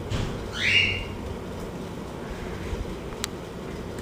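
Pen writing on paper: one short scratchy stroke rising in pitch about half a second in, and a faint click near three seconds in, over low room hiss.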